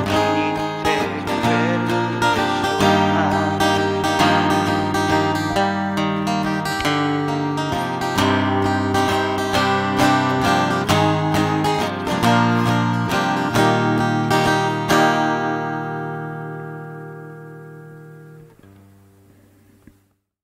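Washburn Rover travel guitar playing a picked instrumental close over sustained lower notes, ending about fifteen seconds in on a final chord that rings and fades away.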